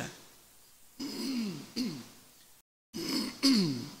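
A man clearing his throat close to a microphone in short rasping bouts, one about a second in and more just after three seconds, each falling in pitch.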